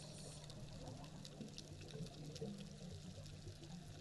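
Faint underwater ambience: a soft watery wash with a few light ticks over a low steady hum.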